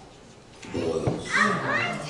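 Speech: a man preaching into a microphone. His voice pauses briefly, then resumes a little under a second in.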